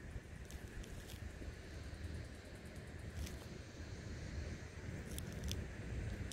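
Faint outdoor background: a steady low rumble, like wind on the microphone, with a few soft clicks in the second half.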